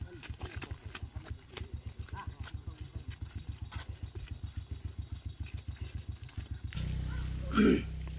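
A small engine running with a rapid, even low putter, about eight beats a second. Near the end it gives way to a steady low hum.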